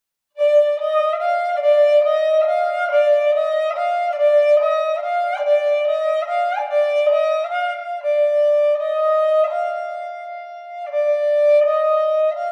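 Sarinda, a bowed folk fiddle, playing a two-note sargam exercise: short bowed strokes alternating between two neighbouring notes, with a couple of slides up midway and longer held notes in the second half.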